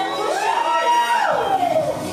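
One long whooping voice call that rises in pitch, holds, then slides down. The bass of the workout music drops out beneath it.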